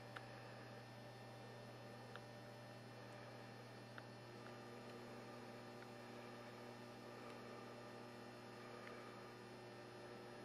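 Near silence: a steady low electrical hum, with a few faint ticks.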